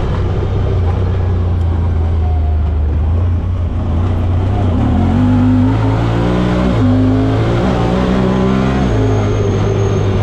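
Side-by-side UTV's engine and drivetrain running while driving along a dirt trail, heard from the cab. The engine note holds steady at first, then rises and falls in steps through the second half as the throttle changes.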